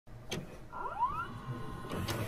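VCR tape-playback sound effect: a click, then a short rising motor whine, then a few more clicks as the cassette starts to play.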